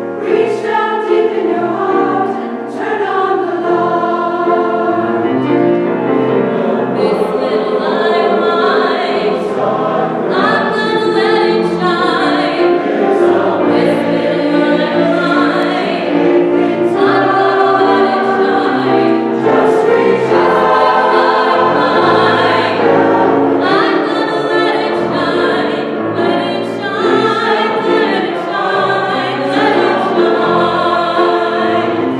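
Mixed choir of men's and women's voices singing together in parts, the chords moving every second or so without a break.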